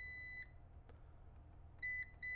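EG4 6000EX-48HV inverter's control-panel beeper: a long, steady high-pitched beep from holding the enter key to open the settings menu stops about half a second in. A faint click follows near the middle, then a short beep near the end as a panel button is pressed.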